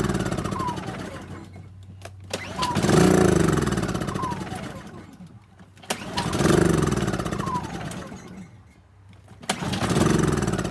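Small portable inverter generator being pull-started on biogas. The recoil starter cord is yanked about every three and a half seconds, each pull spinning the engine up with a whirr that dies away, as the engine fails to keep running.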